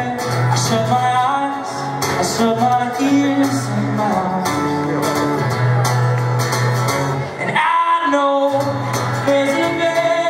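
Male singer performing live with a strummed acoustic guitar, a slow melodic song sung into a microphone. The low accompaniment stops briefly about three-quarters of the way through while the voice rises, then comes back.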